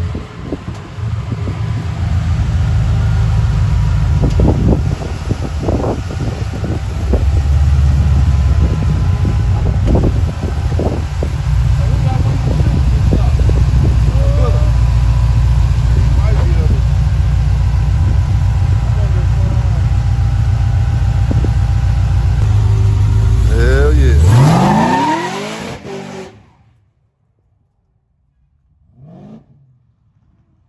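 Supercharged Chevrolet C10 short-bed pickup's engine running at a loud, lumpy idle with occasional blips. Near the end it revs up in one rising sweep, then the sound drops away suddenly.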